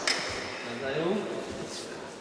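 Applause from a small crowd in a hall dying away, with faint murmured speech about a second in.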